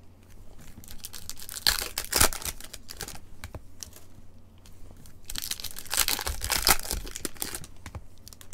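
Foil wrappers of Topps NPB Chrome baseball card packs crinkling and tearing as packs are handled and opened, with chrome cards clicking as they are laid on a stack. The rustling comes in two louder bursts, about two seconds in and again around six to seven seconds.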